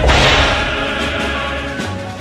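Editing transition sound effect: a sudden swoosh-like hit that fades away over about a second and a half, laid over background music.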